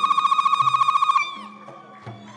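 A high, rapidly trilled ululation held on one pitch, stopping abruptly a little over a second in.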